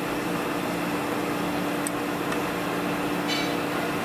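Steady machine-shop hum with one constant tone, and a few light clicks and a small metallic clink about three seconds in as a steel-backed main bearing shell is handled against the aluminium main bearing girdle.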